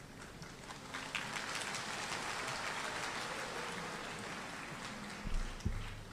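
Audience applauding. The clapping starts about a second in, holds steady and eases off near the end, where a few low bumps are heard.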